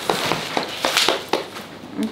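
Crinkling and rustling of packaging being handled, with about half a dozen short sharp crackles that grow fainter near the end.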